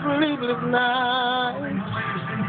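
A voice singing a slow gospel line: a short rising phrase, then a held note with vibrato near the middle, over a low steady musical backing.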